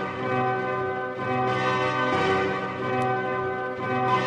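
Music of sustained, ringing bell-like tones that swell and ease in slow waves, with no voice.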